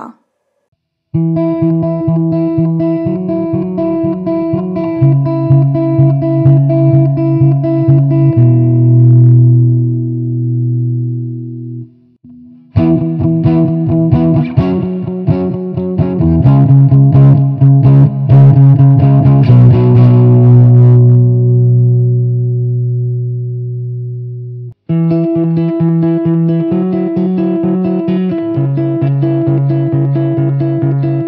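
The same guitar chord progression played back three times, each pass ending on a held chord. The guitar goes through Logic's Amp Designer British amp model with a crunch setting and a vintage British 4x12 cabinet. The middle pass is the electric guitar, with a grittier, brighter distortion; the last pass, starting near the end, is an acoustic guitar through the same amp, made to sound like an electric.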